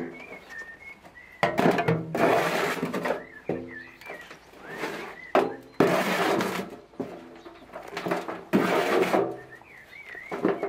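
A shovel scooping and scraping leafy forest-floor compost in a wheelbarrow and tipping it into a plastic pot, in several rough scraping strokes. A blackbird sings in the background.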